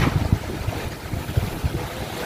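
Wind buffeting the microphone over open sea: a rough, uneven low rumble under a steady hiss.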